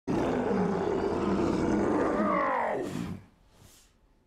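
The Beast roaring in pain, a loud, long growling roar that falls in pitch at the end and dies away about three seconds in.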